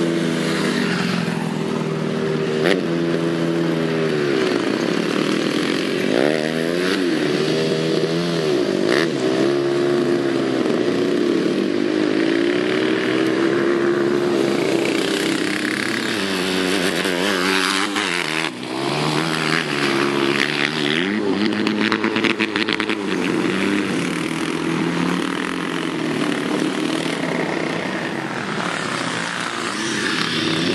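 Go-kart engine driven hard, its pitch rising and falling repeatedly with the throttle, with a brief drop a little past halfway.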